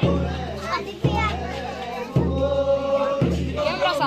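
Group singing of a village folk song over a deep drum beat struck about once a second, each beat ringing on under the voices.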